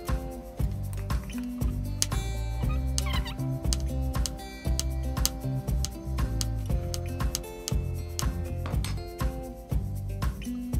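Background music with a steady bass line, over short, irregular knocks of a chef's knife chopping on a wooden cutting board.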